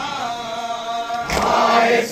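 Shia Muharram nauha (lament) chanted by male mourners: one long held, wavering note, then the chanting swells louder with a sharp slap of matam, hands beating chests, about a second and a half in.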